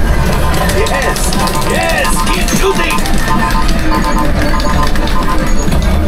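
Ride soundtrack in the Millennium Falcon cockpit of a motion-simulator ride: music over a steady deep rumble, with a short electronic beep repeating about every half second from about a second in.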